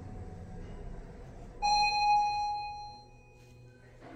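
An elevator's electronic arrival chime sounds a single ding about a second and a half in and fades away over about a second and a half, signalling the car's arrival at a floor going up; a faint low hum of the geared OTIS-LG Si1 car runs underneath.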